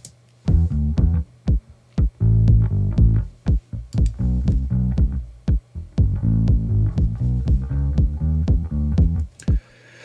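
Mix playback of an electric bass line together with Roland TR-909 drum-machine hits. The bass plays first without the sidechain compressor; about halfway through the compressor is switched on, so the bass ducks under each 909 hit.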